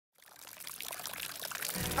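A hissing, splashing noise fades in from silence and grows steadily louder, with music coming in at the very end.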